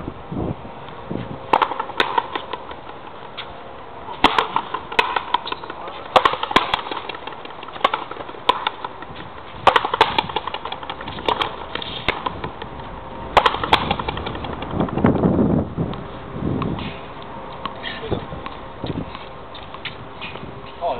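A frontenis rally: the ball is struck with stringed rackets and hits the concrete frontón wall, giving sharp cracks, often two in quick succession, every second or few seconds. A lower, longer sound comes about fifteen seconds in.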